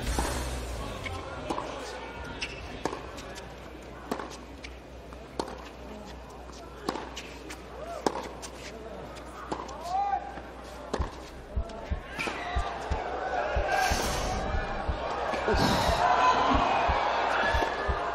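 A hard-court tennis rally: racquets strike the ball and the ball bounces on the court, in sharp knocks about a second or so apart. A murmur of crowd voices builds in the last several seconds as the point goes on.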